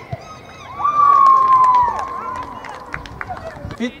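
A loud, high-pitched shout held for about a second, gliding slightly down, rising over the outdoor background noise of a football pitch with scattered short knocks.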